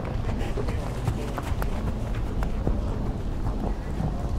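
Hoofbeats of a horse cantering on a sand arena, over a steady low rumble.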